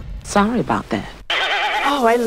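Between songs of a DJ megamix the beat cuts out, leaving a voice alone: two short quavering phrases with a fast wobble in pitch, a sudden break, then a singer holding a long note with strong vibrato.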